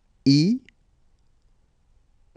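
Speech only: a man's voice says the French letter name "i" once, as a short vowel.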